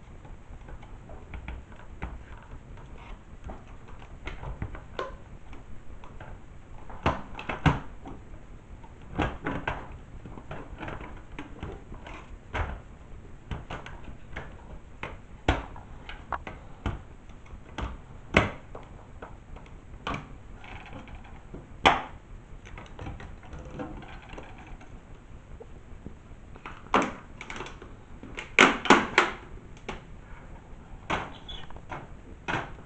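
Irregular clicks, knocks and rattles of an LCD monitor panel being taken apart by hand: its sheet-metal backlight frame and plastic parts are worked loose and handled, with a cluster of louder knocks near the end.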